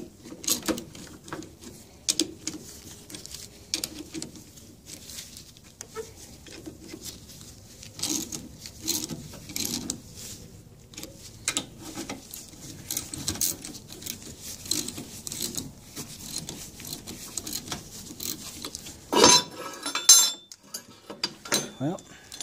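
Steel wrench and puller clicking and clinking in small irregular strokes as the puller bolts on an outboard gearcase are tightened a little at a time. Near the end two sharp metal knocks, a second apart, jar the stuck propeller-shaft bearing housing loose.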